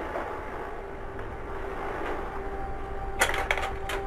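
Kodak Carousel slide projector running with a steady fan hum, then several sharp mechanical clicks near the end as it changes a slide.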